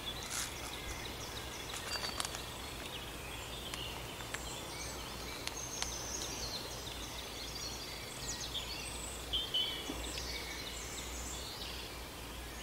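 Small birds chirping and singing in the background, short high calls and trills coming and going throughout, over a steady low outdoor rumble.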